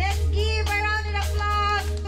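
Live pop-rock band playing: a held low bass note under a high melody line with vibrato, with drum and cymbal hits from a Pearl Roadshow kit.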